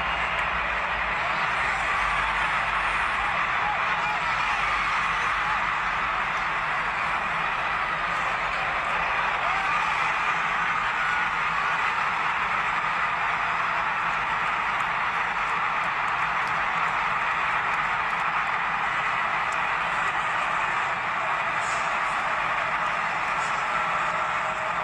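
Large stadium crowd cheering, a dense, steady wall of voices that holds at one level throughout. It is the home crowd cheering a game-winning defensive touchdown on an intercepted pass.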